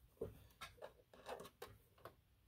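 Faint handling sounds at a sewing machine: a quick run of light clicks and taps with some fabric rustle as a pinned quilt block is fed under the presser foot. The machine is not yet stitching.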